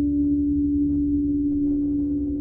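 A steady, sustained low drone tone over a deep rumble, with faint crackles scattered through it that thicken near the end: the sound design of a logo intro's soundtrack.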